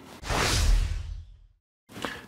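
Whoosh transition sound effect: a single rushing swish with a low rumble beneath, swelling in about a quarter second in and fading away over about a second.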